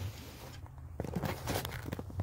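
Faint handling sounds over a low steady hum: a few light clicks and taps from about halfway through, as the new converter and its plastic wrapping are handled.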